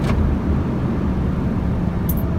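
Diesel engine of a UD truck running steadily under light load, heard from inside the cab, pulling in a lower gear just selected by a double-clutched downshift through the Eaton Fuller Roadranger gearbox.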